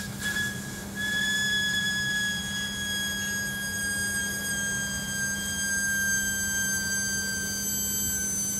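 An overcharged D-cell battery whistling as it vents gas: one long, high, steady whistle that slowly sinks in pitch, with a brief break about half a second in. A steady low electrical hum runs beneath.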